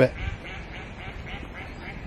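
Ducks quacking faintly across the water, a run of short calls repeating every few tenths of a second.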